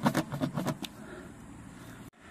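Spiral reamer of a tyre plug kit worked back and forth in a puncture in a car tyre's tread: a quick run of rasping scrapes in the first second, then steady background hum.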